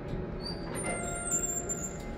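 Elevator chime of a 1997 Otis Series 1 hydraulic elevator ringing once, a little under a second in, and fading, as the car doors slide open with high, thin squeaks.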